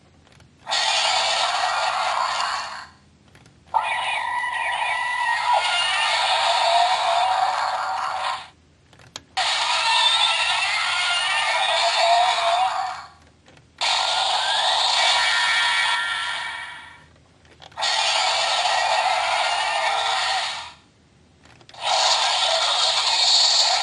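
Black Spark Lens transformation toy playing electronic sound effects through its small built-in speaker. They come as several bursts of a few seconds each, with short breaks between. The sound is thin and tinny, with no bass.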